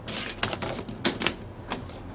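Small wiring parts handled by hand, making a series of irregular light clicks and clatters.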